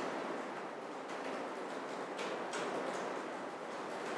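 Steady hiss of room noise, with a few faint clicks.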